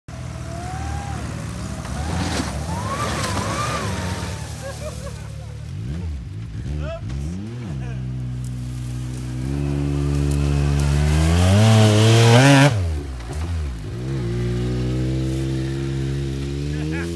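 The air-cooled four-cylinder petrol engine of a 1974 Steyr-Puch Pinzgauer 710M working hard as the truck climbs a steep incline. The revs dip and swell, then climb steadily to a peak about twelve seconds in before falling away.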